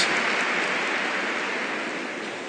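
Diffuse noise from a large seated congregation in a hall, with no distinct voices, fading gradually.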